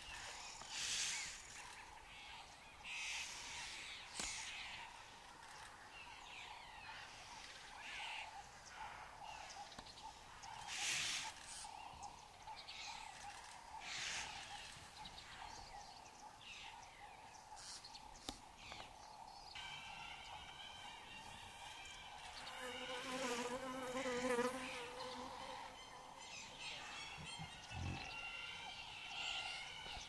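Faint bush ambience under a steady insect buzz, with short, breathy noise bursts every few seconds. A wavering pitched call comes in about two-thirds of the way through.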